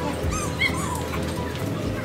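Background music playing through a shopping mall, with a few short high-pitched squeals about half a second in.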